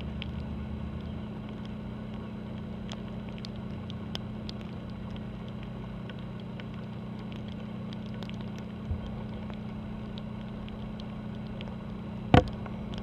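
Steady low drone of ship engines, the cruise ship and its harbour tug, carried across the water, with scattered light ticks of raindrops. A deeper hum drops away about a second in.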